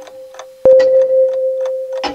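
Electronic track from a Roland TR-6S drum machine and MC-101 groovebox: steady clock-like ticking over a held mid-pitched tone. A sharp hit about two-thirds of a second in makes it louder, with no bass in this stretch.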